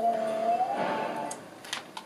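A phone ringing: a single held ringtone note that rises in pitch partway through and then fades, followed by a couple of sharp clicks near the end as the phone is picked up to answer.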